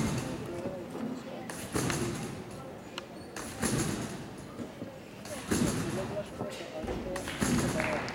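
Competition trampoline bed and springs sounding on each landing of a gymnast's high bounces, a sharp thud with a rattle about every two seconds, five times, over the murmur of arena voices.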